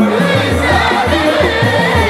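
A group of voices singing a song together over music, with a steady, repeating low beat underneath.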